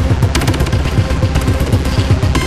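Industrial rock music: a rapid, even kick-drum pattern, several beats a second, pounding under a dense wall of distorted guitar.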